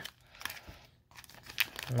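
Faint crinkling of a foil trading-card pack wrapper being peeled open by hand, in a few short spells with a quieter gap around the middle.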